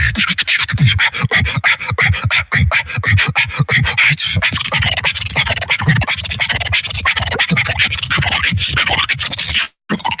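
Solo human beatboxing: a dense, fast run of mouth clicks and bass hits over a high hiss, dropping out for a split second just before the end.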